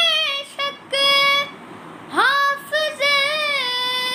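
A boy singing an Urdu manqabat unaccompanied, one voice alone. A sung phrase breaks off about a second and a half in, then after a short pause a note swoops up into a long held line that steps down in pitch near the end.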